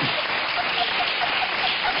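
Studio audience applauding continuously, mixed with laughter.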